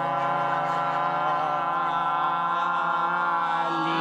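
Several voices holding one long sung note together, a drawn-out group chant.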